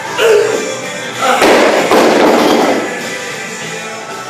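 Rubber bumper-plated barbell dropped onto a garage lifting platform: a loud thud about a second and a half in, trailing off as the bar and plates bounce and rattle for about a second. Rock music plays throughout, and a short shout comes just before the drop.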